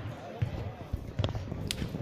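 Basketballs bouncing on the court of a sports hall: a handful of irregular dull thuds, with people's voices in the background.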